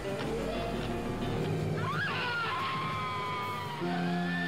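Dramatic music from an old science-fiction film trailer, with sustained low notes. About two seconds in, a high swooping tone rises and falls, then settles into long held high notes.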